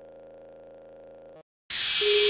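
A faint, steady drone from intro music cuts off about three-quarters of the way through. After a brief silence, a loud hissing swoosh with a held tone starts near the end as the background music begins.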